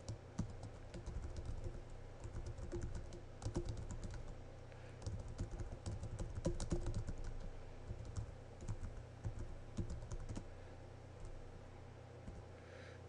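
Typing on a computer keyboard: quick bursts of key clicks that thin out near the end, over a steady low hum.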